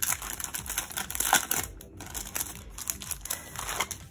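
Clear plastic cello sleeve crinkling as it is peeled open at its sealed flap and handled, with a few sharper crackles.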